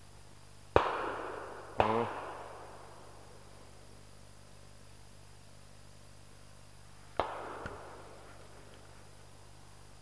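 Two loud shotgun shots about a second apart, each followed by a long rolling echo, then a fainter third shot about seven seconds in.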